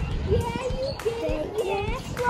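Children's voices chattering and calling out in the background, with a few light knocks.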